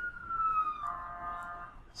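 A steady, high-pitched whistle-like tone holding one pitch throughout, with a short pitched hum from about one second in to just before the end.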